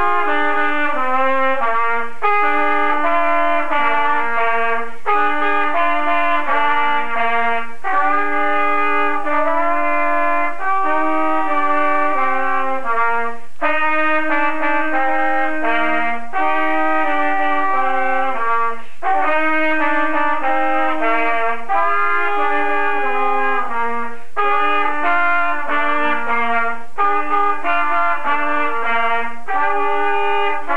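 Two trumpets playing a duet in two parts, with notes held and moving together in phrases of a few seconds, broken by brief pauses for breath.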